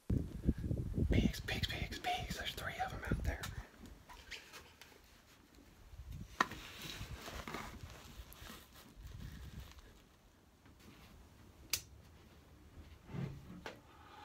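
A person whispering over low, rumbling buffeting on the microphone for the first three or four seconds. Then quieter, with a sharp click about six seconds in and another near the end.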